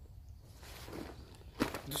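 Rustling of clothing and a backpack as a seated man shifts and reaches across it. The rustling grows from about half a second in, with a sharp knock or two near the end, where a man begins to speak.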